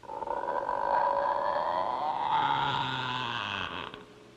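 Cartoon sound effect of a door creaking slowly open: one long, drawn-out creak whose pitch drifts slowly upward. It lasts nearly four seconds and cuts off suddenly.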